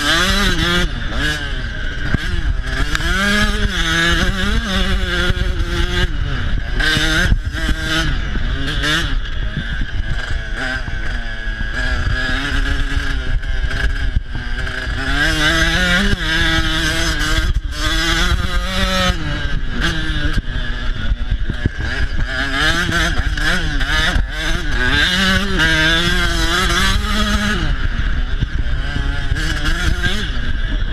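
Dirt bike engine under hard throttle, heard from the bike itself. Its pitch climbs and drops again and again as the rider accelerates, shifts and eases off.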